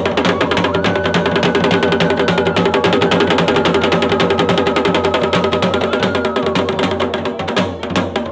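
Garhwali dhol and damau drums played together in a fast, dense, steady rhythm of stick strokes.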